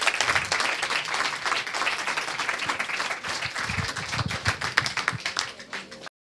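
Audience applauding with sustained clapping that thins out and quiets toward the end, then cuts off abruptly.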